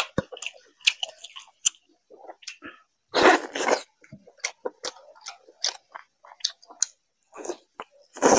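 Close-miked chewing and wet mouth smacks of a person eating chicken curry with his fingers, in quick irregular clicks. About three seconds in comes one louder, longer mouth sound.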